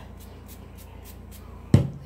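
Faint rustling as hair is wound onto a toilet-paper curler, then one sharp knock near the end.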